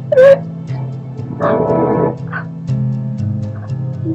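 Eerie radio-drama underscore of sustained low notes that shift pitch about two-thirds of the way through. Over it come brief cries: a sharp, loud one at the very start and a longer one in the middle.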